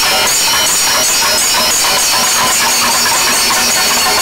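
Chenda drum and ilathalam cymbals playing together in a temple percussion ensemble: a dense, unbroken run of drum strokes under continuous ringing brass cymbals.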